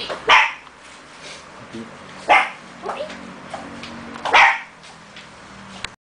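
A dog barking three times, short sharp barks about two seconds apart.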